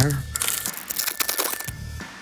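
Foil trading-card pack being torn open and crinkled in the hands: a dense run of crackling rustles lasting about a second and a half, then fading.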